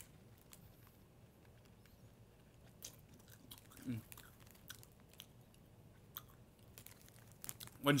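A person quietly chewing and sucking on a honey-roasted peanut: faint scattered crunches and mouth clicks, with a brief hum about four seconds in.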